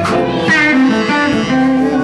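Live blues-rock band playing, with electric guitar prominent.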